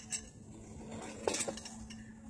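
Metal cutlery clinking against plates and dishes at a dining table as food is eaten and served: a light clink near the start, then a quick cluster of clinks a little over a second in and one more near the end.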